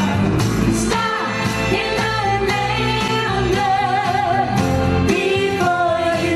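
A woman singing a pop-soul song into a microphone, with vibrato on held notes, over a band accompaniment with bass and a steady drum beat.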